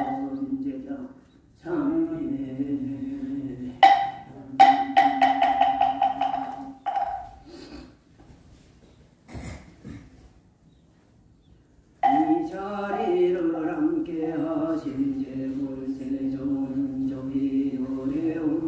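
A Buddhist monk's low, steady chanting, punctuated by strikes on a moktak (wooden temple block), including a quick run of strikes about four seconds in. The chanting breaks off into a lull for about four seconds and starts again with a strike about twelve seconds in.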